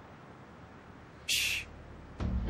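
A single short, harsh bird screech about a second and a half in, over quiet night ambience.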